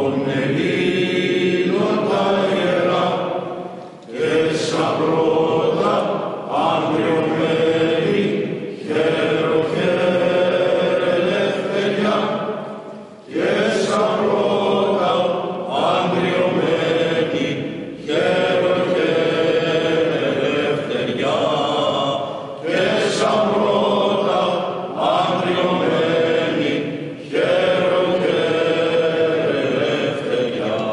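Greek Orthodox Byzantine chant sung by voices in a resonant church, in long phrases of a few seconds each with brief breaks between them, over a steady low held note.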